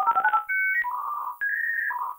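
Electronic outro jingle: a quick run of short synth notes, then longer held tones that step between a few pitches, with a ringtone-like sound.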